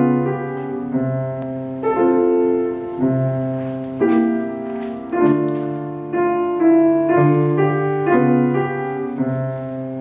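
Classical piano music: a lyrical passage of chords and melody notes over held bass notes, a new chord or note struck roughly every second and left to ring.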